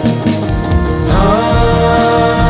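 Live worship band playing a Christian song, with singers coming in on a sung "Hallelujah" about a second in that rises and then holds.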